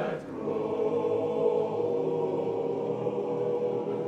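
Male barbershop chorus singing a cappella in close harmony, holding a long sustained chord after a brief break just after the start.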